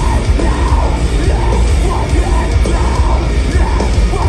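Live metalcore band playing loud through a theatre PA, heavy bass and drums under screamed vocals, as heard from inside the crowd.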